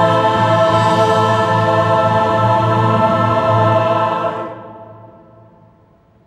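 Large mixed choir holding a sustained chord, released about four seconds in, the sound then dying away in the hall's reverberation.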